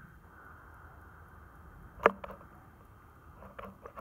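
Faint steady background hiss, broken by one sharp click about two seconds in and a few fainter ticks near the end, from handling small equipment.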